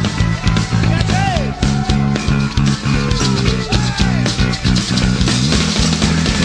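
Live rock band playing at full volume: distorted electric guitars, bass and drums, with a few sliding high notes over the top.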